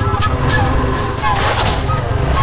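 Motorcycle engine running steadily with a low rumble.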